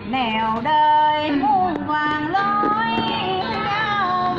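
A woman singing a Vietnamese vọng cổ verse, holding long notes that slide and bend in pitch, over soft guitar accompaniment.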